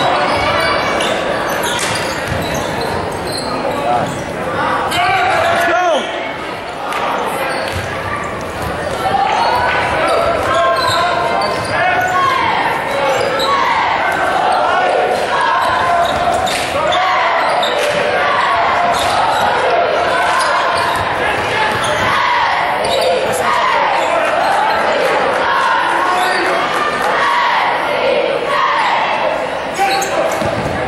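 A basketball being dribbled on a gym court amid many overlapping crowd voices and shouts, echoing in a large gymnasium.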